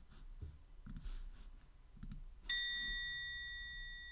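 A single bell-like chime struck about two and a half seconds in, ringing with several high tones that fade slowly. Faint clicks come before it.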